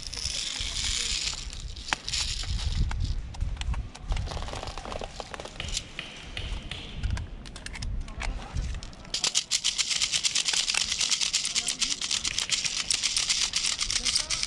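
Dry fallen leaves rustling and crackling under someone shifting about and handling gear on the forest floor, with a dense run of rapid crackling from about nine seconds in.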